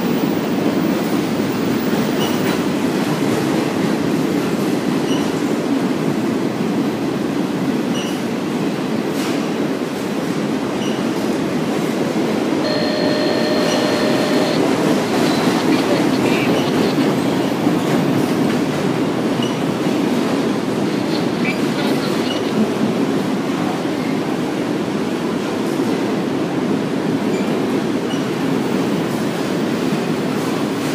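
A CSX freight train of autorack cars rolls past at steady speed: a continuous rumble of wheels on rail, with faint clicks every few seconds. About 13 seconds in comes a brief squeal lasting about two seconds.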